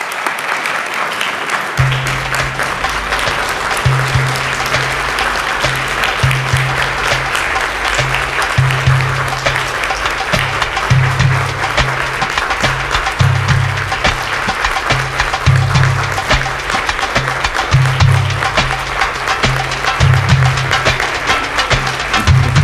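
Audience applauding, and about two seconds in, music with a rhythmic bass line and percussion comes in and carries on over the clapping.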